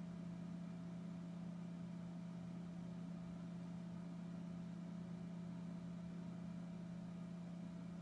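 A steady low hum with a faint higher steady tone above it, unchanging throughout; no drawing or paper sounds stand out.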